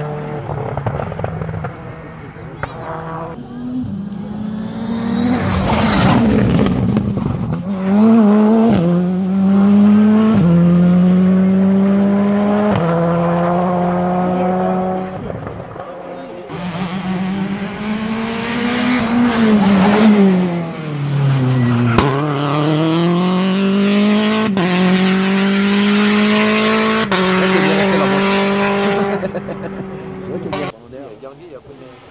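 Rally car engines at full throttle, climbing through the gears with sharp upshifts. One car passes loudly about six seconds in and pulls away through several gears. Later another is heard shifting up, then the revs drop deeply and climb again.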